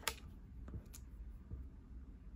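A few light plastic clicks from a small LEGO model being handled and turned over, the first the sharpest.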